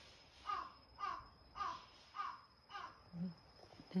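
A crow cawing: five short, harsh caws in a steady series, about two a second.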